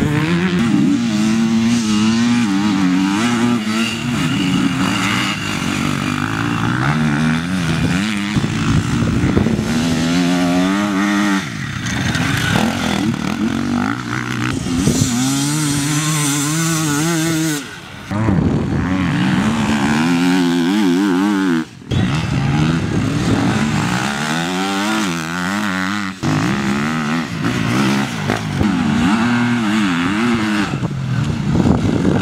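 Enduro dirt bike engines revving hard, the pitch climbing and dropping as riders accelerate and shift through the gears. The sound breaks off abruptly a few times where shots change.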